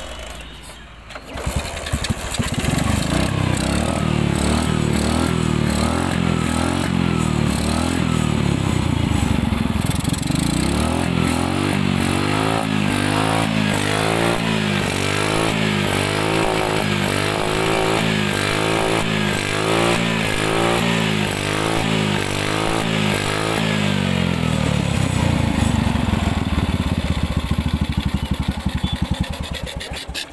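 Four-stroke LML scooter engine starting about a second in and then running. It runs with the intake hose off and a hand held over the intake as a choke, after its loose ignition coupler was refitted. The engine speed rises and falls repeatedly in the middle, then it quietens near the end.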